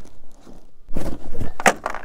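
A cardboard shipping box and its plastic wrapping being torn open by hand: a few loud ripping and rustling noises from about a second in, the sharpest near the end.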